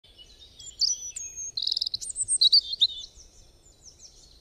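Birdsong: a run of high chirps and whistles with a fast trill in the middle, fading out near the end.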